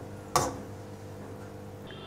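A single short knock of a metal slotted spoon against the cookware, about a third of a second in, over a low steady hum.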